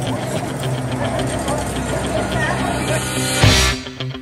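Background music over voices, then a loud rock beat kicks in near the end with heavy hits about twice a second.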